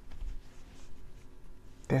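Faint rustling and scratching, like light handling of paper or cards, during a pause. A woman's voice starts at the very end.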